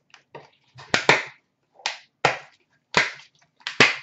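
Sharp clicks and knocks, five or six spread irregularly, from trading-card tins and their metal lids being handled.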